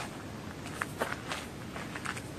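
Footsteps of a person walking outdoors: a few steps, each a short crunch, in the second half.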